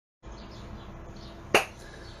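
Steady room noise of a recording picked up at a cut, with one sharp click about one and a half seconds in.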